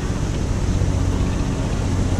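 Steady wind rumbling on the microphone, mixed with the wash of ocean surf breaking below.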